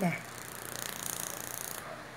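Mechanical washing-machine timer being wound by hand at its knob shaft. Its ratchet gives a fast, even run of small clicks for about a second and a half, then stops abruptly.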